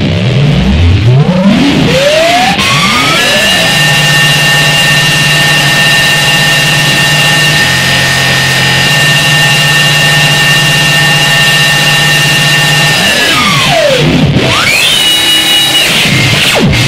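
Loud electronic noise music: several pitches sweep upward, settle into a steady held chord of tones over a dense hiss, then sweep back down near the end.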